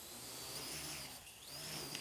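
AR.Drone 2.0 quadcopter's electric motors and propellers whining faintly, the high whine dipping and rising about a second in, as it strains and fails to lift a weight hanging from a string beneath it.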